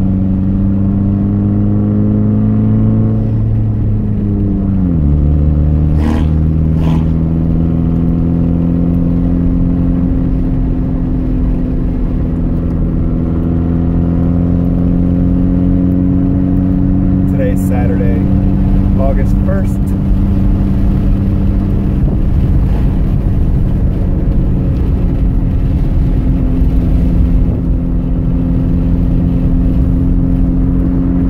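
Saab 9-5 Aero's turbocharged 2.3-litre four-cylinder running steadily, heard from inside the cabin on a downhill run. The revs drop once, about four to five seconds in, as with a change up through the manual five-speed gearbox, then hold steady and slowly rise again.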